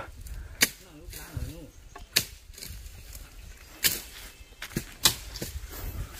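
Curved brush-cutting knife slashing through weeds and brush: about five sharp swishing chops, irregularly spaced a second or so apart.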